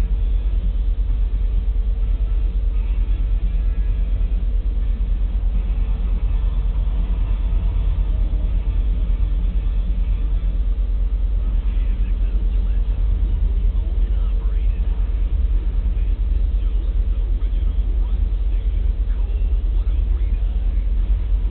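Loaded coal hopper cars of a freight train rolling past on the rails, a steady low rumble with no break.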